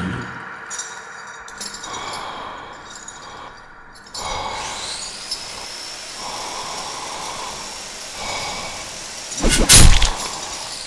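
Horror sound-effects track: low, uneasy noise, then a thin high whine that rises in about four seconds in and holds. Near the end comes a sudden loud burst, the loudest sound, with a voice and a sharp gasp.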